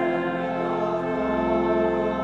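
Pipe organ playing a hymn in held chords, with the congregation singing along.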